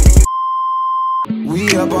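Hip-hop track with heavy bass hits cuts out, and a steady high-pitched electronic beep holds for about a second. The music then comes back in.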